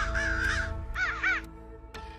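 Crows cawing: one harsh call at the start, then three quick caws about a second in, over background music with sustained tones.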